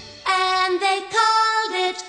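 Music: a high voice singing a short phrase alone, without the instruments, which come back in just after.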